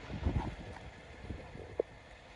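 Wind buffeting the microphone outdoors: an uneven low rumble that gusts in the first half-second and then eases, with a short faint blip near the end.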